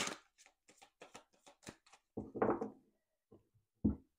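Oracle card deck being shuffled by hand: a quick run of soft card slaps and rustles, then a louder shuffle about two seconds in. Near the end a single knock as the deck is set down on the cloth-covered table.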